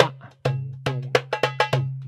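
Darbuka (goblet drum) played by hand in a drum-kit-style groove: deep, ringing bass strokes from the centre of the head serve as the kick, and sharp, bright strokes serve as the snare. There are about eight strokes in two seconds, and the bass strokes leave a low ring.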